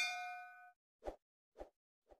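Notification-bell sound effect: a single bright ding that rings and fades away within the first second, followed by two short, soft clicks.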